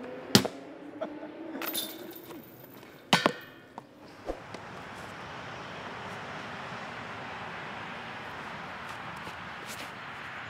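Discs striking a metal disc golf basket: a sharp clank just after the start and a second, ringing metallic hit about three seconds in, with the chains jingling. From about four and a half seconds on, a steady background hiss.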